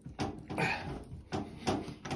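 Several light clicks and rubbing sounds as a gloved hand wiggles a Delta shower valve cartridge to work it loose from the valve body.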